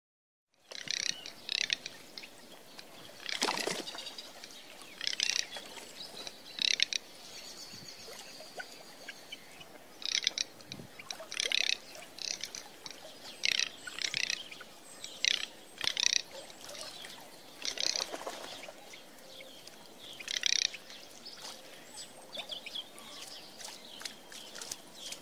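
Garganey calling: short, dry rattling calls, one every second or two in irregular runs, over faint steady background hiss.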